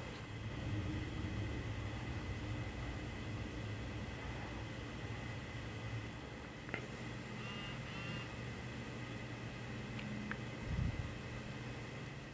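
Quiet room tone: a steady low hum with faint hiss, a few faint clicks, a brief faint chirping about two-thirds of the way in, and a soft low thump near the end.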